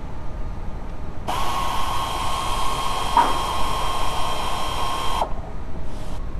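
Small cordless power tool driving a T30 Torx fastener: a steady motor whine that starts about a second in and stops about four seconds later.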